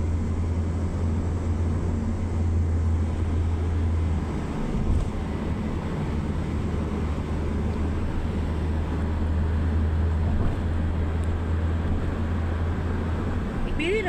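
Steady low road and engine rumble heard inside the cabin of a moving car, dipping briefly about four and a half seconds in.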